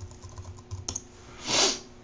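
Fast typing on a computer keyboard, a quick run of key clicks, with one short, louder hiss like a breath about three-quarters of the way through.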